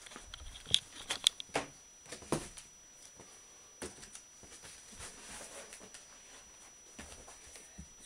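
Canvas prints on wooden stretcher frames being handled and moved: a few sharp taps and knocks with light rustling, bunched in the first four seconds, then quieter.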